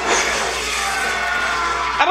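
Soundtrack of a TV drama episode playing: a sudden noisy hit right at the start that trails off under held music tones.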